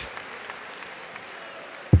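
Crowd applauding in a darts arena: a steady wash of clapping without any clear individual claps.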